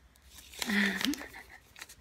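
Paper rustling and crinkling in the hands as a small paper-wrapped item is handled and unwrapped, with a short vocal exclamation just over half a second in.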